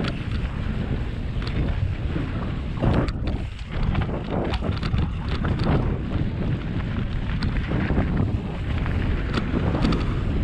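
Wind buffeting a camera microphone as a mountain bike rolls fast down a dirt singletrack, with a steady low rumble of tyres on the dirt and scattered clicks and rattles from the bike and loose stones.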